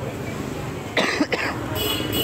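A person coughing in a few short bursts about a second in, with a steady hum beginning near the end.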